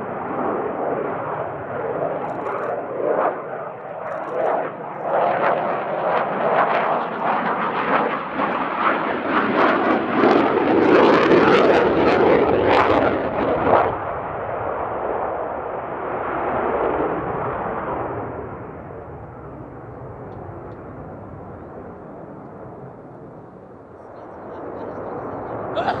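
F/A-18C Hornet's twin General Electric F404 turbofan engines in display flight: loud jet noise with a ragged crackle, building to its loudest about halfway through. It then drops off sharply and fades as the jet moves away, and grows louder again near the end as it returns.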